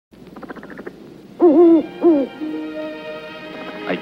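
Orchestral film-score music from an old movie soundtrack. A brief fluttering opening is followed by two loud swooping notes about half a second apart, then a held chord.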